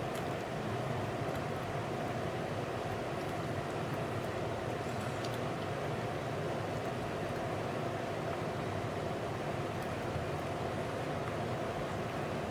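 Steady background hum and hiss of a room, even and unchanging, with no distinct sounds standing out.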